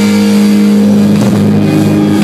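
Live rock band with an amplified, distorted electric guitar holding a long sustained note that rings steadily and shifts in pitch a little over a second in.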